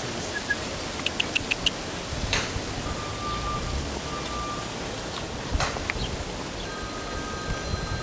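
Outdoor ambience with steady wind noise on the microphone, a quick run of five faint high clinks and a few short ticks, and a faint steady high tone now and then.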